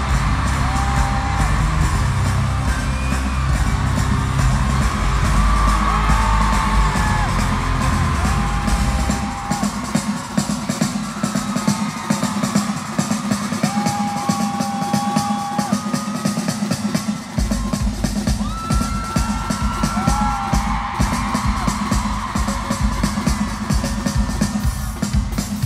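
Live pop concert music played loud through an arena PA, driven by a drum kit, with the crowd whooping. The heavy bass drops out about ten seconds in and comes back near eighteen seconds, leaving drums and short held high notes over the gap.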